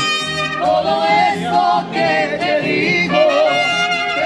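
Mariachi band performing live: a singer holding long notes with a strong vibrato over brass.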